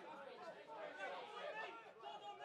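Several faint, distant voices calling and talking over one another on a rugby pitch.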